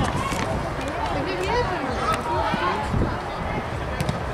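Players' voices shouting and calling to each other during a small-sided football match, with scattered sharp knocks.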